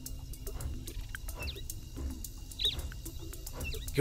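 Faint ambience of three short, high, hooked animal chirps about a second apart over a low steady hum.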